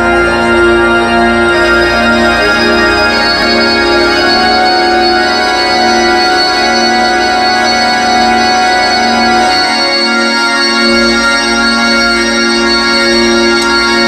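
Live electric organ playing long sustained chords that change slowly, with no drums.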